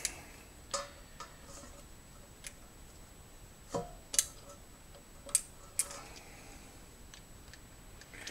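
Pliers pressing a small metal pin into a snowmobile choke lever: a handful of light metal clicks and ticks at uneven intervals.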